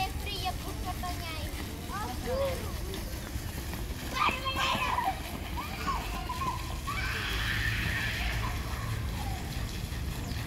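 Young children's voices calling out and squealing as they play, with a second or two of hissing noise, like splashing water, late on.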